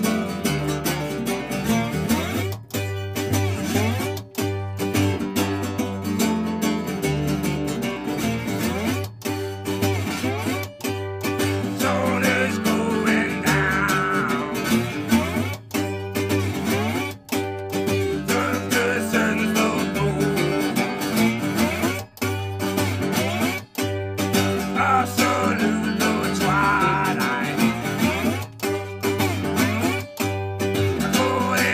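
Blues played live on slide guitar and hollow-body electric bass: a steady strummed beat over a walking bass line, with notes sliding up and down on the guitar about twelve seconds in and again near the end.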